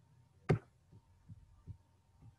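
A sharp click about half a second in, followed by three or four soft, evenly spaced knocks over a faint steady hum: the sound of the computer being operated as the on-screen document is scrolled down.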